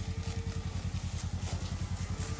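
A small engine, that of a utility side-by-side, idling steadily with a quick even pulse of about ten beats a second.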